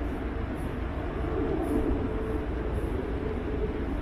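Steady low rumble of city road traffic, with a faint steady tone running through it.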